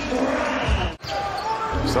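Basketball bouncing on a hardwood court amid arena crowd noise. The sound breaks off abruptly about a second in, where the broadcast cuts to the next play, then picks up again.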